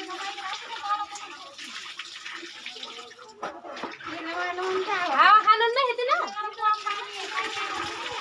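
Water running from a tanker's taps into buckets and pots, under several people's voices talking over one another; the voices are loudest about five seconds in.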